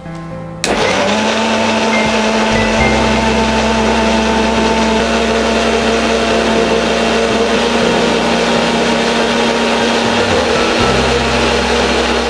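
Electric mixer-grinder switched on about a second in and running steadily under load, a loud, even whirr with a steady motor hum. It is blending chopped bottle gourd into juice.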